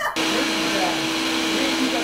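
Ninja countertop blender running at a steady speed, blending a smoothie, with a steady hum under the motor noise. It starts suddenly right at the beginning.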